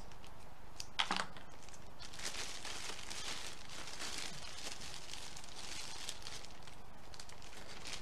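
Cellophane gift bag crinkling and rustling as its top is gathered and cinched with ribbon, after a single sharp click about a second in.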